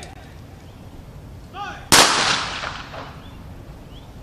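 One volley of a ceremonial rifle salute: several rifles fired in unison about two seconds in, a single sharp crack whose echo dies away over about a second.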